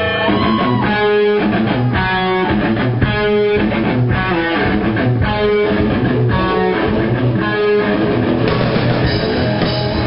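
Live rock band playing amplified electric guitars and bass, the guitars strumming a repeating chord riff in short pulses about once a second. From about eight seconds in the sound fills out into the full band playing steadily.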